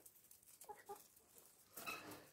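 Near silence, with two faint, short chicken clucks close together just under a second in.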